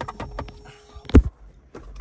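Light plastic clicks and knocks from hands fitting wiring and parts into a car's plastic mirror housing, with one loud low thump a little over a second in.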